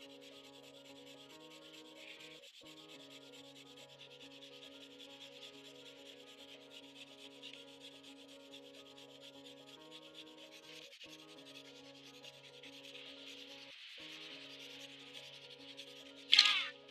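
Faint, continuous rubbing or scraping, with held tones beneath it that shift in pitch a few times.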